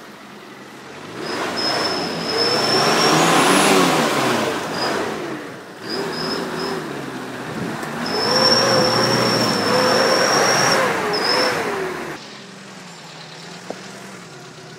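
Daihatsu Feroza's four-cylinder engine revving hard in two long bursts under load on a steep off-road climb, then dropping back to a lower, steadier running near the end. A high, steady squeal sounds over the loudest revving.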